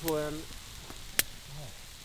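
Faint hiss of a campfire, with one sharp click about a second in.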